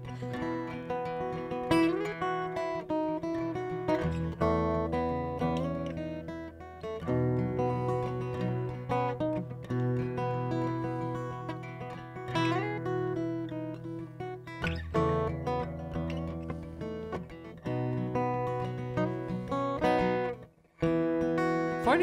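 Solo steel-string acoustic guitar playing a fingerpicked instrumental introduction, picked melody notes over sustained low bass notes. The playing breaks off briefly near the end, then resumes.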